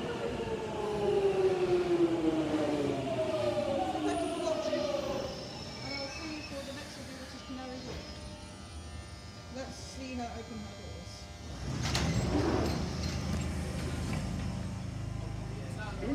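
London Underground Jubilee line 1996 Stock train braking into the platform, its motor whine falling in pitch over the first five seconds as it slows to a stop. About twelve seconds in there is a sudden burst of noise as the train and platform-edge doors slide open, then a steady low hum from the standing train.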